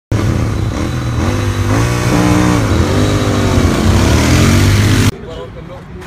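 Royal Enfield 650 parallel-twin motorcycles running loudly as they ride up, with voices over the engine sound. The sound cuts off abruptly about five seconds in.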